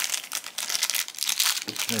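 Thin clear plastic bag crinkling and crackling irregularly as it is handled and worked open by hand.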